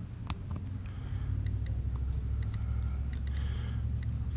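Nest smart thermostat clicking softly as its outer ring is turned to step the heat setting up, a string of short irregular ticks over a low rumble.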